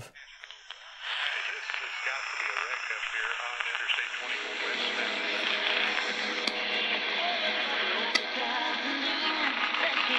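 AM broadcast audio from the Tiemahun FS-086 emergency radio's small speaker: a distant station heard thin, without bass, coming in about a second in with a voice and then music.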